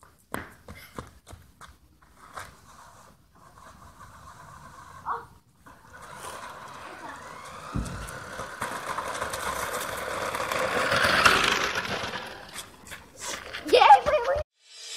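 A small electric RC car driving across gravel: a motor whine that rises in pitch over tyres crunching, growing louder to a peak a few seconds before the end and then fading. Scattered clicks come before it.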